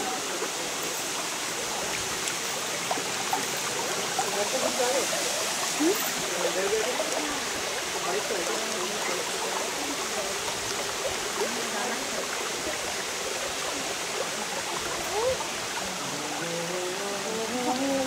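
Steady rush of shallow water running over rocks in a stream bed, with faint distant voices.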